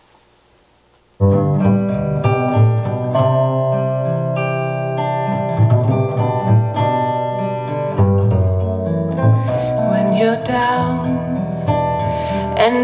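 A female-vocal music track playing through Focal Chora 806 bookshelf speakers. The music starts suddenly about a second in, and singing comes in near the end.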